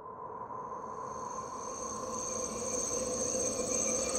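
Crickets chirping in an ambient intro that fades in and grows steadily louder, over a hiss with a few steady lower tones.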